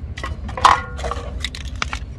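Thin-walled empty plastic drink bottle being handled and squeezed, crackling in several short, sharp bursts, the loudest a little over half a second in, over a steady low rumble.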